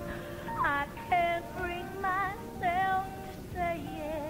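A woman singing a country-and-western-style musical theatre number with vibrato, in several short phrases over instrumental accompaniment.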